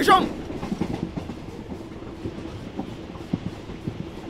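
Interior of a moving passenger train carriage: a steady running rumble with the wheels clattering irregularly over the rails.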